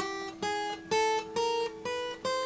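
Acoustic guitar's thinnest string, the high E, plucked one note at a time while climbing the neck: about five single notes in two seconds, each a little higher than the last, with the open string's lower note still ringing underneath.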